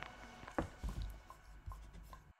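Faint handling noise: a few soft clicks and rubs, the loudest about half a second in.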